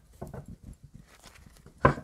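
A deck of tarot cards being shuffled by hand: soft, irregular flicks and taps of the cards, with one sharper tap near the end.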